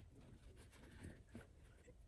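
Near silence with a faint, muffled man's voice talking on the phone in another room.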